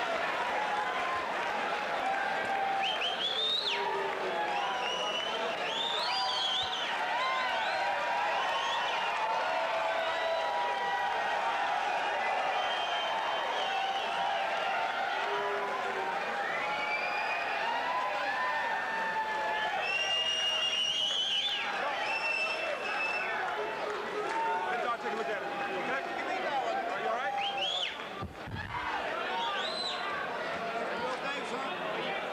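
Boxing arena crowd chattering and calling out, many voices overlapping in a steady hubbub with no single clear speaker.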